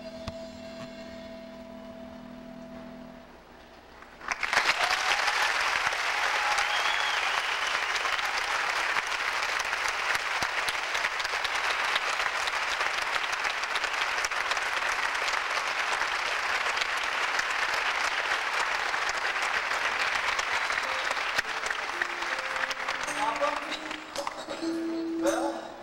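A held musical note ends, and about four seconds in a theatre audience breaks into loud applause with a few whoops. The applause goes on steadily for almost twenty seconds and dies down near the end.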